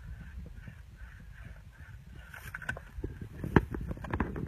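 Wind rumbling on the microphone, with scattered light knocks and one sharp click about three and a half seconds in.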